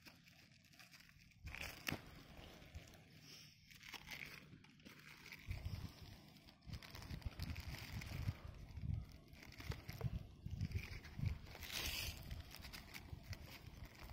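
Faint crinkling and handling of plastic grafting tape as it is stretched and wrapped around a fresh apple graft to seal it airtight, with irregular low rumbles from about five seconds in.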